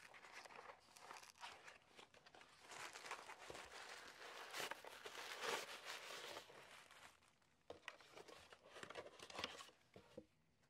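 Paper handling: a cardboard mailing box is opened and a tissue-paper-wrapped package is slid out, rustling and crinkling. It is loudest in the middle, then settles into a few soft taps and rustles near the end.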